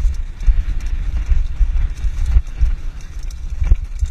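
Wind buffeting the camera microphone and a mountain bike rattling as it descends a rough dirt trail, with sharp knocks from bumps, a strong one shortly before the end.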